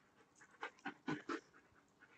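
Faint, quick panting: about four short breathy puffs in under a second, around the middle.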